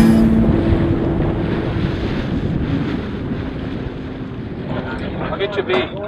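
Wind buffeting the microphone over water rushing along the hull of a gaff-rigged wooden sailing boat in choppy water, slowly fading, with brief voices near the end.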